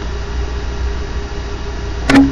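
A steady low mechanical rumble with a constant mid-pitched hum over it, even throughout.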